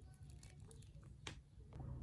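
Near silence: room tone, with one faint click of the hard plastic action figure being handled a little past a second in.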